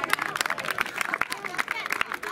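A small group clapping their hands, irregular and unsynchronised, with voices talking over it.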